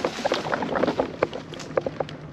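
Mobility scooter rolling over a dirt trail covered in dry leaves and pine litter, the leaves and twigs crackling under the tyres with irregular clicks and small knocks.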